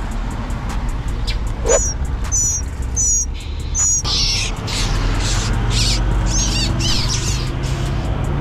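Small birds chirping: four sharp, high chirps evenly spaced well under a second apart, then a quicker run of calls in the second half. They are the calls of the parent birds near a young bird being picked up from a planted bed.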